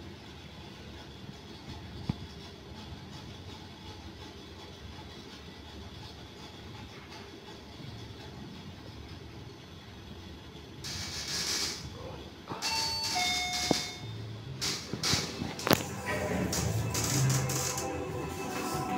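Steady low hum of a Fujitec REXIA machine-room-less freight elevator car travelling up. Near the end come a rush of noise, a few short high tones and a run of clicks and clunks as the car arrives, then music comes in.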